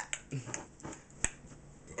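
A few light, sharp clicks and taps as hands work the crust edge in the pie pan, the sharpest about a second and a quarter in.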